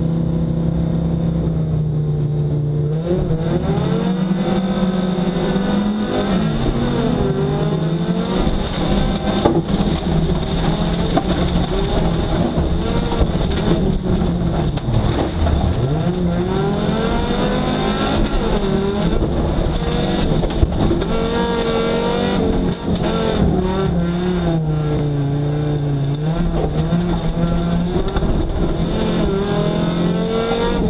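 Volvo 850's five-cylinder engine heard from inside the cabin, held at steady revs on the start line, then launching about two to three seconds in and revving up and down repeatedly through the gears under hard acceleration. Tyre and gravel noise run under the engine throughout the run.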